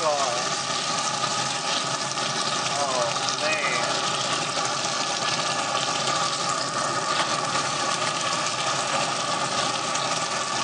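Chicken wings sizzling in buffalo wing sauce in a carbon steel skillet inside a pellet grill, over the steady hum of the grill's fan, while tongs stir the wings.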